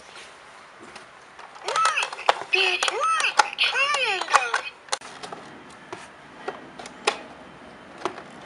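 A high-pitched voice in sing-song, rising and falling tones for about three seconds, with no clear words. Sharp clicks of hard plastic toy parts are handled through it and after it.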